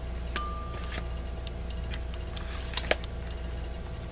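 A few irregular light clicks and taps from thin hardcover picture books being handled and swapped, over a steady low electrical hum.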